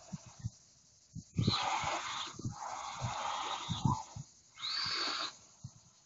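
WLtoys L202 and A959 electric RC cars driving over loose dirt: three bursts of hissing rush from spinning, skidding tyres, with scattered low thumps. The last burst is the brightest and ends a second before the end.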